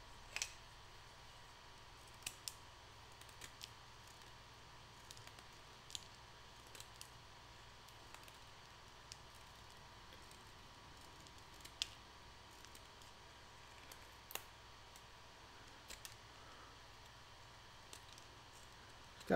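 A pencil being sharpened by hand with a folding multitool's blade: faint, sparse clicks and scrapes as wood is shaved off, spread irregularly over a low steady hum.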